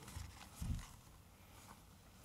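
Quiet hall room tone with two soft, low thumps in the first second, the second louder, typical of someone moving and stepping across a carpeted floor.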